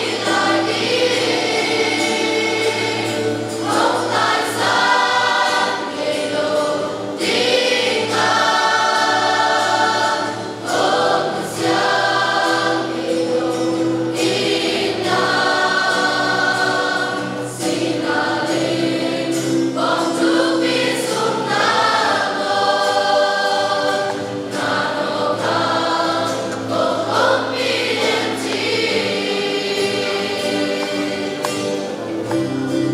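A choir of young women singing a hymn in held phrases a few seconds long, over steady instrumental accompaniment.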